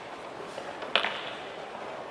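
Steady background noise of a crowded indoor arena, with one sharp knock about a second in as a show-jumping horse's hooves land after a fence.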